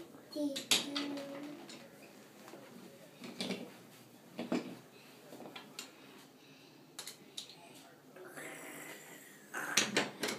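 Wooden toy trains knocked and pushed along a wooden toy railway track: scattered sharp clicks and knocks a few seconds apart, with a child's voice briefly at the start.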